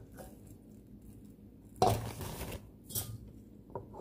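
Cookware being handled on a stone kitchen counter: a sharp knock about two seconds in, a softer knock a second later, then a few light clicks near the end as a stainless steel pot is set down.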